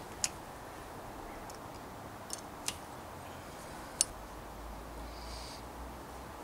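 Four sharp little metallic clicks, the loudest about four seconds in, from a hex key and hand tools working on a bicycle's Shimano Deore LX rear derailleur, over a steady faint hiss. A faint low rumble comes in over the last two seconds.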